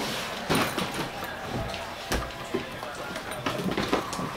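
A large wheeled suitcase knocking down carpeted stairs, several dull thumps at uneven intervals, the heaviest about two seconds in.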